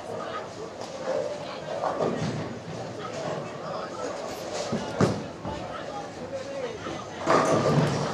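Bowling alley ambience: indistinct background talk in a large hall, with one sharp knock about five seconds in and a louder burst of noise near the end.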